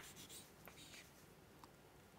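Faint scratches and taps of chalk writing on a chalkboard, beginning with a short sharp tap.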